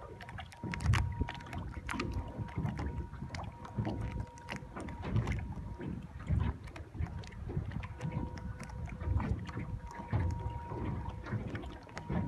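Wind buffeting the microphone in irregular gusts over water noise aboard a small wooden motor yacht. Under it a faint, steady ringing tone from a brass singing bowl holds throughout.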